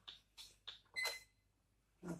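A few faint clicks from the buttons of a toy electronic keyboard being pressed, and a short high electronic beep about a second in.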